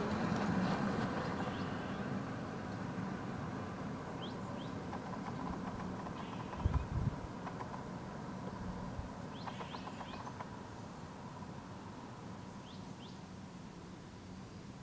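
Outdoor ambience: a steady low rumble and hiss, with a few faint, short bird chirps, a pair about four seconds in and a few more near ten and thirteen seconds. A brief low thump comes about seven seconds in.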